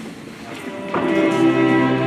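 A Moravian cimbalom band of fiddles and cimbalom strikes up about a second in, playing held notes over a steady low note.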